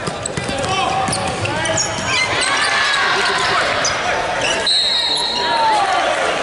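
Basketball game on a hardwood court: sneakers squeaking, the ball bouncing and players' voices, then a referee's whistle blown about three quarters of the way through for under a second, calling a foul.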